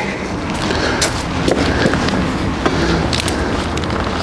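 Stiff new leather latigo straps on a western saddle being handled, a run of irregular small clicks and rustles as the straps are pulled and moved, over a steady low background rumble.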